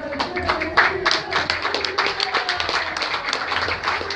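Scattered, irregular handclaps from a few people in a small audience after a poem is read, with faint voices behind them.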